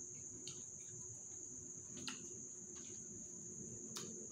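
Night insects trilling steadily at one high pitch, with a few soft clicks of hands and food against plates.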